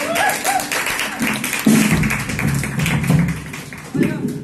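Live band music: electric guitar with a steady rhythmic ticking and a run of low notes, growing quieter near the end.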